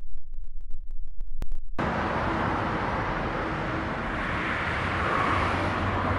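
Road traffic: a steady outdoor wash of passing cars that cuts in suddenly about two seconds in, after a low muffled rumble, and swells a little near the end as a car goes by.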